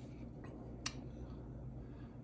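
A plastic model-kit sprue being handled, quiet except for one sharp click a little under a second in and a fainter one before it.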